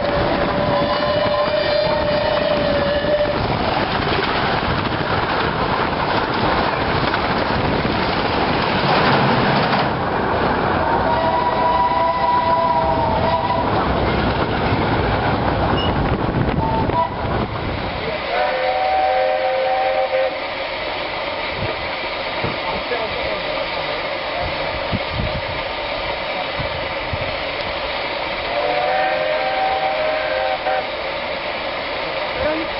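Train horn blasts heard from aboard a moving narrow-gauge train over loud wheel and running noise: a long lower note at the start, then a higher note about eleven seconds in. After the sound drops at around 18 s, two shorter blasts of a two-note horn follow, one about 19 seconds in and one near the end.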